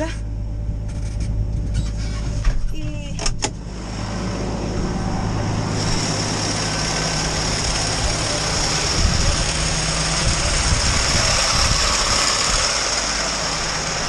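Tractor engine running steadily at idle, with a few clicks about three seconds in. From about four seconds a loud, steady hiss builds over it: grain pouring from the auger into the trailer.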